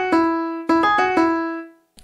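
Virtual piano played from a MIDI keyboard: a short single-note melody of about five notes moving around E, F sharp and G sharp, the last note ringing and fading out near the end.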